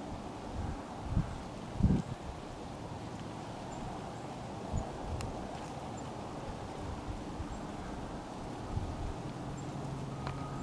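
Outdoor wind noise: a steady hiss with a few low thumps on the microphone, the loudest about one and two seconds in.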